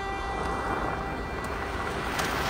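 A car driving up, its engine and tyre noise rising, with the held notes of string music fading underneath.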